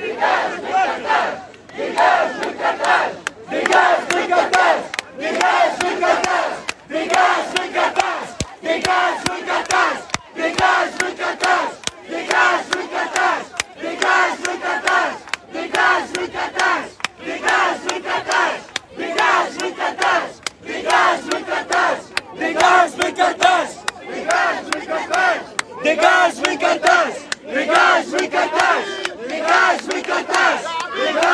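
A large crowd of protesters chanting slogans in unison, in a steady rhythm of short shouted phrases repeated over and over.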